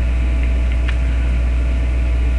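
Loud, steady low electrical hum with a faint higher whine over it, and two faint clicks about half a second and a second in.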